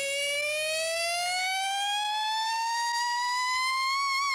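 A siren-like tone winding slowly and steadily upward in pitch, with a slight waver near the end, used as a sound effect between two hip hop songs.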